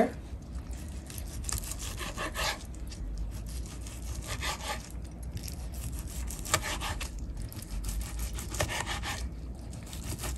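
Chef's knife slicing through a seared chicken breast and down onto a plastic cutting board: a few short, separate cutting strokes a second or two apart.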